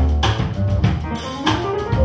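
Small jazz band playing: double bass notes under drum-kit strokes and cymbals, with piano.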